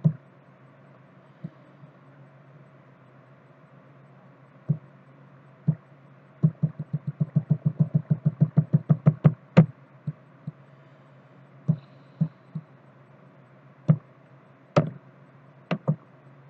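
Sharp clicks from someone working a computer's mouse and keys over a low steady hum: a few single clicks, then a quick run of about fifteen clicks at roughly six a second, then more scattered single clicks.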